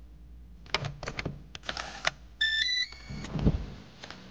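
A few sharp clicks, then a short electronic beep tone in two quick steps, followed by a low thump.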